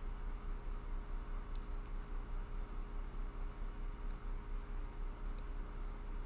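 Room tone: a steady low hum under faint hiss, with a single sharp mouse click about a second and a half in.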